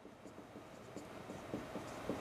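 Marker pen writing on a whiteboard: faint, quick scratching strokes as letters and numbers are written, growing a little louder near the end.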